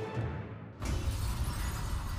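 Dramatic music whose highs fade out, then about 0.8 s in a sudden explosion sound effect with a shattering crash and a low rumble that carries on to the end.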